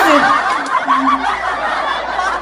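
A person laughing, breathy and in short broken bursts.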